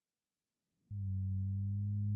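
About a second of dead digital silence, then a low steady synthetic buzz at one fixed pitch starts abruptly. It is a glitch of the Google text-to-speech voice, holding a tone just before it speaks the next words.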